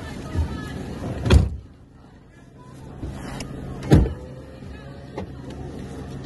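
Vehicle engine running steadily at low speed, heard from inside the car's cabin, with two loud thumps, about a second in and again about four seconds in.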